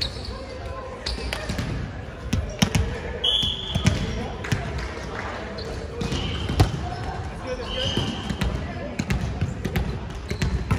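Indoor volleyball rally on a hardwood gym court: repeated sharp slaps of the ball being hit and bouncing, sneakers squeaking briefly on the floor a few times, and players' voices calling indistinctly, all echoing in the large hall.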